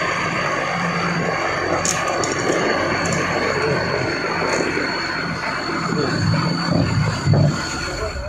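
A front loader's engine running steadily close by, a low rumble with a thin, steady high whine over it.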